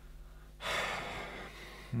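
A person's single audible breath, like a gasp or sigh, about half a second in, tailing off over about a second, over a faint low hum.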